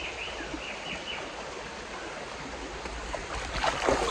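Birds calling over the steady rush of a rainforest stream, with a few short falling chirps in the first second or so. Near the end come splashes and knocks as someone starts moving through the water and foliage.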